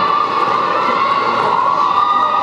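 Spectators cheering and shouting at a steady level, echoing in a large indoor sports hall.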